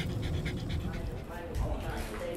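A dog panting quickly with its tongue out, about five short breaths a second.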